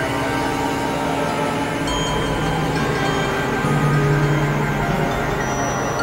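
Experimental electronic drone music: sustained synthesizer tones layered over a dense, noisy texture, with a low drone that drops away about two seconds in and comes back near the middle.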